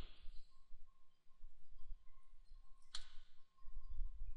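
A single sharp computer mouse click about three seconds in, over a faint low background hum.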